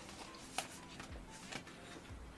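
Faint handling of paper envelopes, with a sharp tap about half a second in and a smaller one about a second and a half in, over quiet background music.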